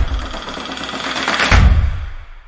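Tail of a logo intro sting: the driving beat stops, a softer sound swells back up into a deep bass hit about one and a half seconds in, and this then fades out.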